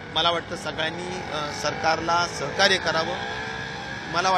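A man speaking Marathi close to the microphones, in continuous speech.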